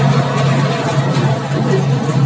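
Interior of a non-air-conditioned economy bus cruising on a highway: a steady low engine drone under loud road and wind noise.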